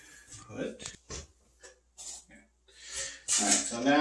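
A few short, scattered knocks and shuffles from a man moving about and picking up a thin plywood board, then a man starts speaking near the end.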